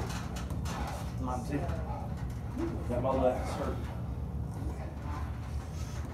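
Men straining and grunting during an arm-wrestling pull: a few short, strained vocal sounds, over a steady low hum.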